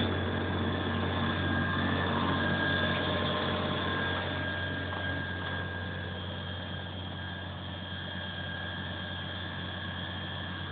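Fire appliance's engine running steadily: a low hum with a faint, steady high whine, easing a little after about four seconds.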